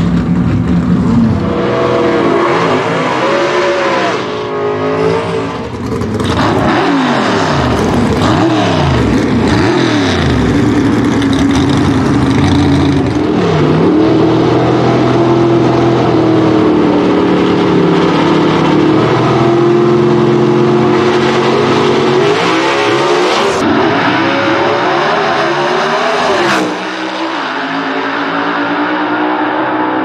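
Two A/Gas gasser drag cars' engines revving up and down at the starting line, then held at steady high revs. About three-quarters of the way through they launch and the sound drops away as they run down the track.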